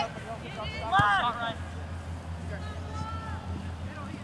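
A spectator's loud shout about a second in, with a low thump at the same instant, then fainter voices, over a steady low hum.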